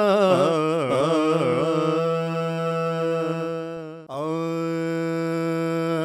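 Background music: a single voice singing long held notes in a chant-like style, with wavering ornamented turns between them. It breaks off briefly about four seconds in, then holds another long note.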